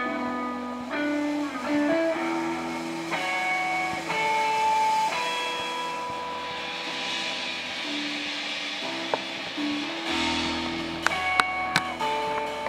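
Live band music: a guitar playing a slow melody of long held notes over piano and upright bass. The drummer's cymbals swell up and fade in the middle, and sharp drum-stick clicks come in near the end.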